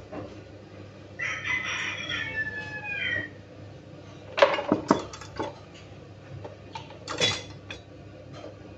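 A rooster crows once, about a second in, a call of about two seconds that falls in pitch at the end. Later come a few sharp clinks and knocks of dishes being handled.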